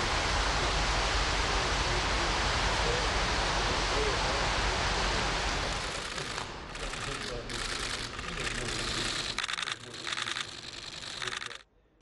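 Steady rushing of fountain water with faint voices under it. About six seconds in, it gives way to runs of rapid camera-shutter clicks from press photographers.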